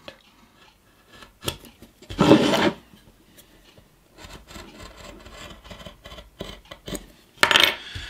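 Craft knife scoring through masking tape into a wooden blank around a paper template: light scratching and rasping with small ticks, including a short louder scrape a little after two seconds in and another near the end.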